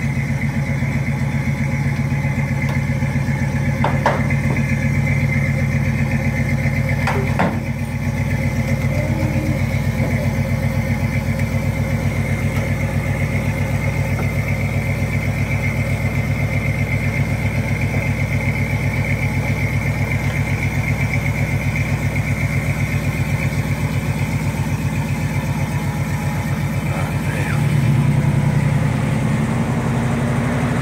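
1979 Pontiac Trans Am's 403 Oldsmobile V8, bored .030 over with a mild cam and breathing through headers and Flowmaster mufflers, idling with a regular pulse as the car rolls slowly. A couple of brief clicks come early, and the engine note gets louder and deeper a couple of seconds before the end.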